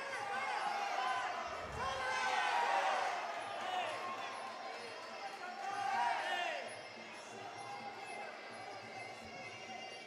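Cornermen and spectators shouting at a Muay Thai bout while the fighters clinch and trade knees, the shouts easing off in the last few seconds. A dull thud about two seconds in.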